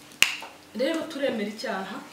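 A single sharp click about a quarter of a second in, with a short ringing after it, followed by a woman speaking.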